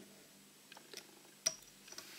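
A few faint, small ticks as a metal whip-finish tool and tying thread are worked at the hook eye to knot off the head of a fly, the sharpest tick about one and a half seconds in.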